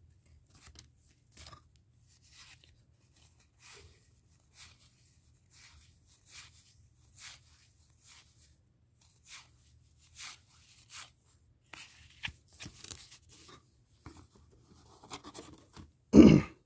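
Faint, irregular flicks and slides of cardboard baseball cards being thumbed one by one off a stack by hand, with a slightly busier run of strokes near the end.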